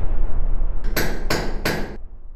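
Logo sound effect: a low rumble, then three sharp, ringing strikes in quick succession, about a third of a second apart.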